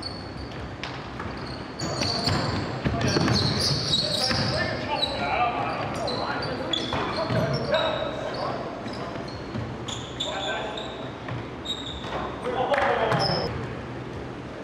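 Basketball game on a hardwood gym court: the ball bouncing, sneakers squeaking in short high chirps, and players' voices calling out.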